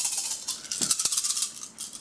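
A handful of plastic gaming dice rattling as they are shaken together, with a couple of sharp clicks about a second in.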